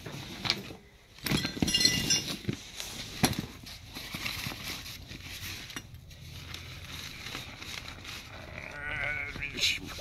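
A fabric duffel bag being unzipped and rummaged through: rustling cloth with small clicks and knocks of parts inside, busiest in the first few seconds. A short wavering hum from a person's voice near the end.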